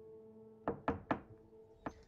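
Knocking on a door: three quick knocks, then a single one a moment later, over a faint steady low drone.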